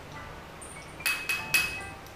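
Three quick clinks of a utensil against a small container, each with a short ringing tone, about a second in, as coffee powder and honey are handled for mixing. Soft background music plays underneath.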